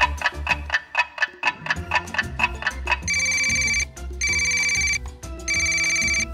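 Light background music with a plucked, bouncing beat, then about three seconds in a telephone starts ringing: three short electronic ring bursts, each under a second, with brief gaps, as the music's beat carries on underneath.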